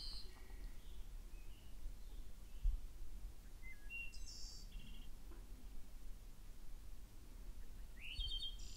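Faint, scattered bird chirps: a few short calls over quiet outdoor background, with a soft low thump about two and a half seconds in.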